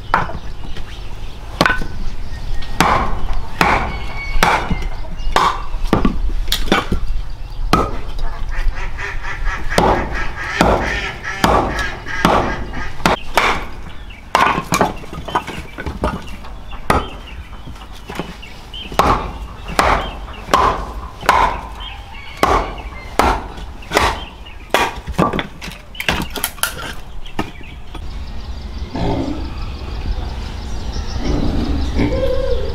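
Machete chopping firewood on a wooden block: repeated sharp strikes at an irregular one to two a second as the wood is split into kindling.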